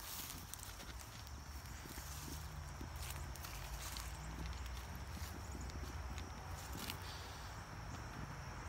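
Soft footsteps and rustling on a grass lawn, as scattered light clicks over a faint, steady low rumble.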